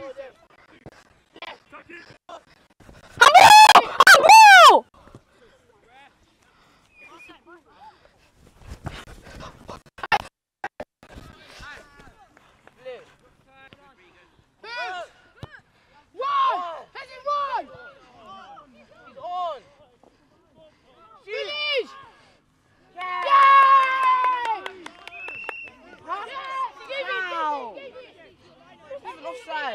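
Shouts and calls from players and spectators at a children's football match on an open pitch. One loud, drawn-out shout comes a few seconds in, shorter calls are scattered through the middle, and a louder burst of shouting comes near the end.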